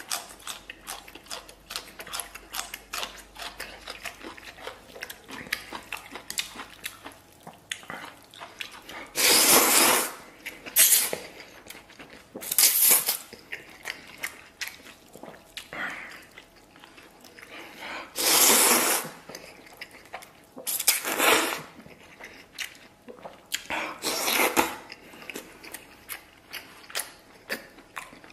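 Close-up sounds of a person eating noodles: steady wet chewing and mouth clicks, broken by about six loud noisy slurps of noodles, each lasting up to about a second.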